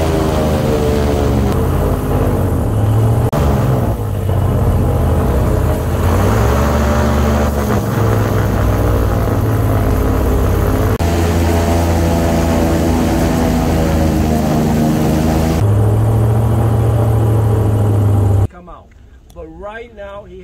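Airboat engine and propeller running loud at speed, the pitch rising and falling several times with the throttle. It cuts off suddenly near the end, and a voice follows.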